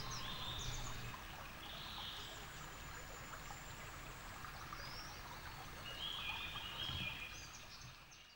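Faint woodland stream ambience: shallow water trickling, with short bird calls now and then, fading out near the end.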